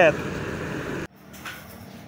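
Steady outdoor background noise with no distinct events, cut off abruptly about a second in and followed by faint, quiet ambience.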